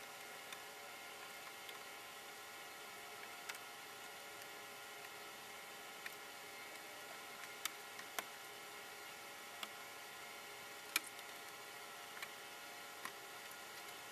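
Faint, irregular sharp clicks over a steady low hiss, about nine in all: plastic push-pin clips being popped out of the underside of a 2000 Ford Mustang GT's hood to free the hood insulation pad.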